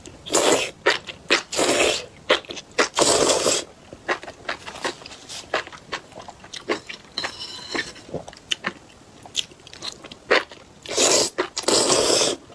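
Close-up mukbang eating sounds: enoki mushroom strands and chili broth slurped off chopsticks in loud bursts, three in the first few seconds and again near the end. In between come wet chewing and crunching clicks.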